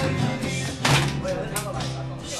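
Live acoustic band playing: acoustic guitars and bass with violin, with two sharp percussive hits a little under a second apart.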